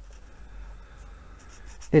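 Marker tip rubbing on a colouring-book page as a small section is filled in: a faint, steady scratching.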